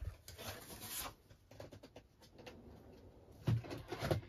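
A sheet of scored paper sliding and rustling across a plastic scoring board for about the first second, then faint handling sounds and a couple of light knocks near the end.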